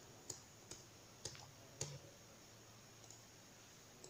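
Four faint computer clicks in the first two seconds, over near-silent room tone.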